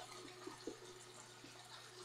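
Faint sizzle of ground pork browning in a pan on an induction cooktop, with a faint tick or two of a wooden spoon stirring.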